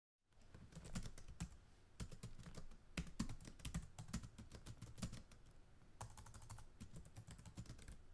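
Computer keyboard typing: faint, irregular key clicks that start about half a second in, with a brief pause about two-thirds of the way through.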